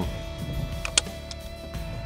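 Hand staple gun firing a staple through metallized tape into a log wall, a sharp click about a second in with a weaker one just before it. The stapler drives the staples poorly.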